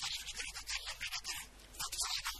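A man orating into a microphone, his voice badly distorted and thin: rasping bursts broken by short pauses, with the low end of the voice missing.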